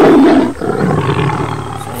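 A lion's roar sound effect. It is loudest at the very start and trails off over about two seconds, much louder than the surrounding talk.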